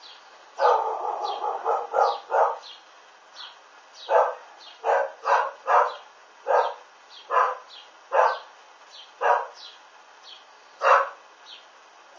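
A dog barking repeatedly: a quick flurry of barks about half a second in, then single barks roughly once a second.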